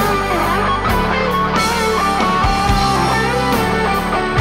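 Live rock band: an electric guitar plays a lead solo with bent, sliding notes over held bass notes and drums.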